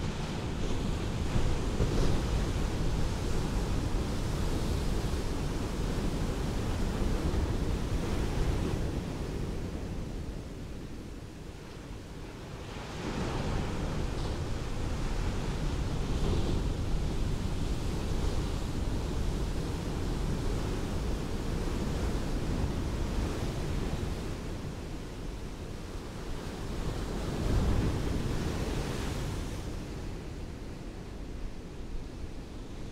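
Ocean surf: waves washing onto a beach in long swells and ebbs, with a lull about a third of the way in before the next wave builds, and a louder surge near the end.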